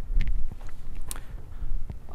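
A pause with no speech: a low room rumble with a few faint, brief clicks.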